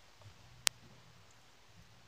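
A single sharp click about two-thirds of a second in, against a quiet room.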